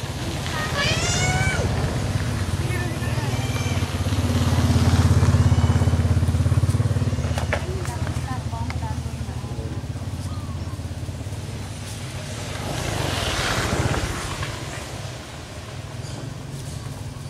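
A motor vehicle's engine hum passing nearby, swelling to its loudest about five seconds in and then fading. A few short high-pitched calls that bend in pitch come near the start, and a second, noisier swell comes near the end.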